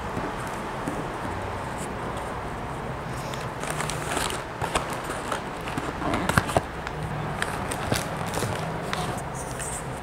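Rustling and crinkling as a cloth muslin bag and then a cardboard snack-bar box are handled and opened close to a clip-on microphone, with small clicks and taps scattered through.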